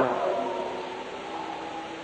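Steady hiss of an old tape recording, with the preacher's last word echoing away in the hall just at the start and a couple of faint held low tones underneath.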